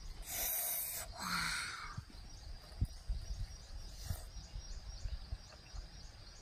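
A person slurping a raw blood cockle: two breathy slurps in the first two seconds, then a few soft clicks of chewing.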